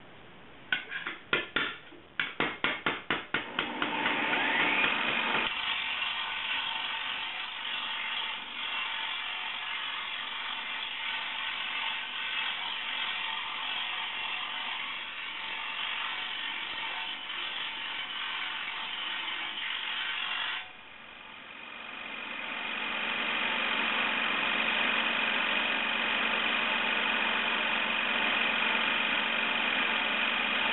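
A mallet strikes a steel sheet-metal panel on a stake about a dozen times: a few spaced blows, then a quick run. Then a bench-mounted angle grinder runs with the steel piece held against its disc, a steady grinding noise with a whine that eases off sharply about two-thirds in and builds back up louder.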